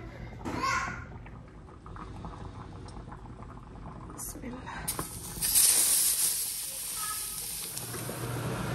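A raw steak sizzling in a hot stainless-steel frying pan: a loud, even hiss that starts about five seconds in and holds. A brief voice sound comes under a second in.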